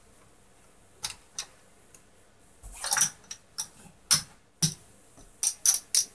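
Casino chips clacking against each other as they are picked up, stacked and set down on a felt table. About a dozen sharp, irregular clicks, with a short cluster about three seconds in.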